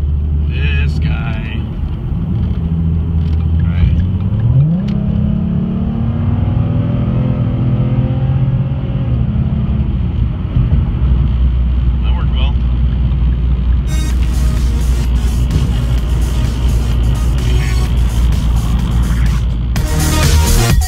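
Ford 3.7-litre V6 of a 2011–14 Mustang heard from inside the cabin while driving on the highway: a steady low engine drone with road noise, the engine note rising about five seconds in as it accelerates, holding, then dropping back a few seconds later.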